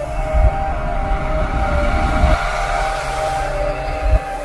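Synthesized drone sound effect: several steady held tones over a rushing noise and a low rumble, with the rumble easing off a little past halfway.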